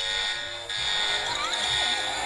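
A cartoon tablet's electronic warning alarm: a steady, high-pitched tone that starts under a second in and holds, over background music.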